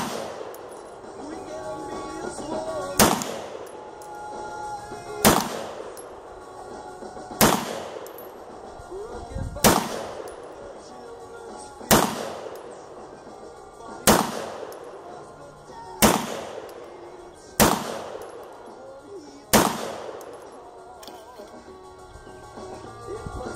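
Nine gunshots at a steady pace about two seconds apart, starting about three seconds in, each with a short echoing tail. A single sharp crack comes right at the start.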